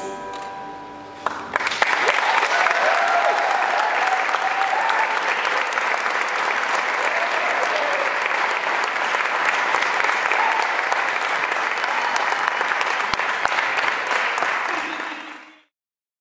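Audience applause with cheering voices, starting about a second and a half in as the last notes of the music die away, holding steady, then fading out quickly near the end.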